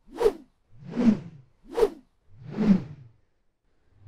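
Four whoosh sound effects, alternating short sharp swishes with longer swelling ones, about one every 0.8 seconds.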